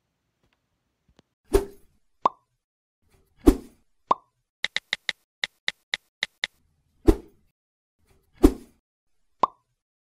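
Cartoon-style sound effects for an animated end-screen graphic: four heavy thumps, each followed shortly after by a short pop, and a quick run of about nine sharp clicks in the middle.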